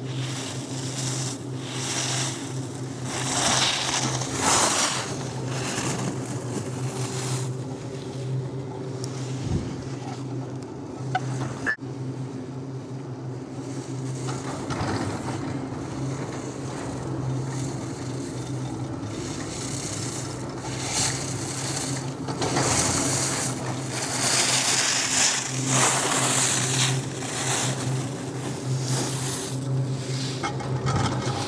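Skis carving and scraping over packed snow in repeated swishes that swell and fade, over a steady low mechanical hum.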